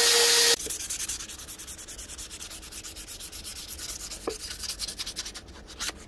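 A motor-driven buffing wheel runs loud with a steady hum for about half a second, then cuts off abruptly. Quick, regular back-and-forth hand-sanding strokes follow, several a second, scratchy and much quieter, and stop just before the end.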